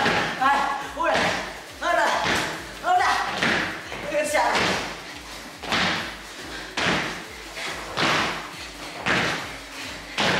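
Repeated thuds of several people landing jumps together on a wooden floor, about one landing a second, with short vocal sounds from the jumpers between the landings.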